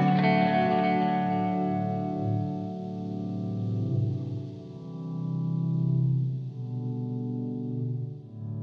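Ambient instrumental music led by a guitar played through effects. Sustained notes ring on; the bright upper notes fade out over the first couple of seconds, leaving lower held tones.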